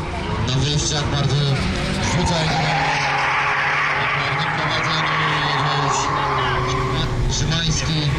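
Cycle speedway bicycle tyres skidding on the shale track as riders slide through the bends, a hiss that swells a couple of seconds in and fades near the end, over background voices and a steady low hum.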